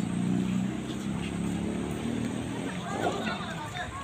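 People's voices talking, over a low steady motor hum that fades after about two and a half seconds.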